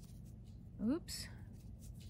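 Faint scratching and rustling of a metal crochet hook drawing yarn through stitches. About a second in there is a woman's short rising 'hm', followed at once by a brief hiss.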